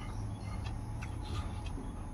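Close-miked eating sounds: fingers scraping rice from a metal bowl and chewing, heard as scattered small clicks over a low steady hum.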